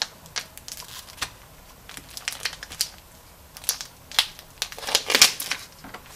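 Plastic lid film being peeled off a plastic tub of block mozzarella, with crinkling and crackling of the packaging in short irregular bursts, loudest about five seconds in.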